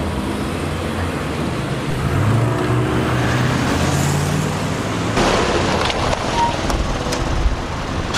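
Car engine running as the car pulls in to the kerb, its low note rising for a couple of seconds before a noisy surge about five seconds in, with street traffic around it. A few sharp clicks come near the end.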